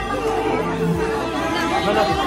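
Chatter of many people talking at once, with devotional bhajan music and singing underneath.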